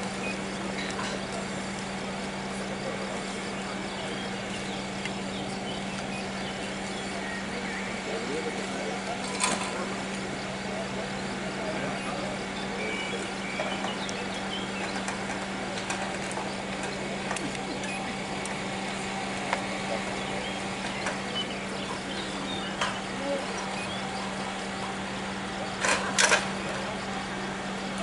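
Fire pump engine running steadily, a constant hum, feeding the charged hoses. A few sharp knocks sound over it: one about a third of the way in and two close together near the end.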